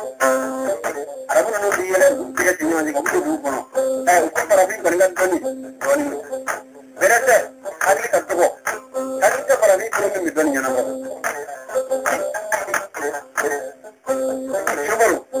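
A male voice singing in melodic phrases over instrumental accompaniment, with a steady held note sounding under the voice again and again between short pauses.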